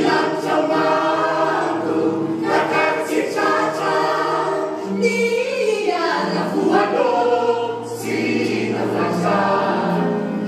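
A mixed choir of men and women singing together, holding sustained chords that change every second or so over a low bass line.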